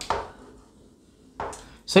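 Chalk tapping and scraping on a blackboard during writing: a sharp tap at the start and another about a second and a half in.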